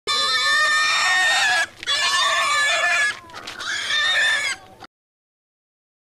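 A domestic pig squealing as several men grip it and hold it down: three loud squeals of about a second each, the last one shorter, and the sound cuts off suddenly about five seconds in.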